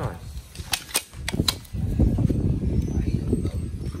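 Aluminium telescopic ladder being handled: a series of sharp metallic clicks and clacks in the first second and a half, then a low rumbling of handling and knocking against the ladder's tubes.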